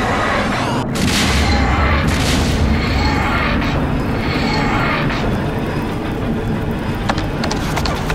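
Explosion sound effect: a deep, continuous booming rumble with a sudden brief break about a second in.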